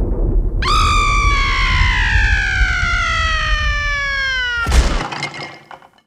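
Thunder rumbling under a long, high scream that slides steadily down in pitch for about four seconds. The scream ends in a sharp crash of something shattering, then the rumble dies away to silence.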